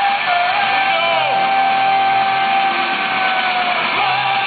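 Live punk rock band playing loud through a PA, with electric guitars and drums and one long held note through most of the stretch, heard from within the crowd.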